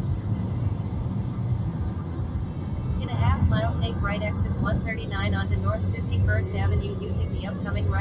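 Steady low rumble of a car's road and engine noise heard from inside the cabin while cruising on a freeway, with voices over it from about three seconds in.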